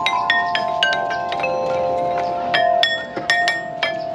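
Outdoor playground metallophone, its metal tube bars struck unevenly with wooden sticks: a quick run of clear, pitched notes that ring on, a lull of about a second in the middle while the notes keep ringing, then another run of strikes near the end.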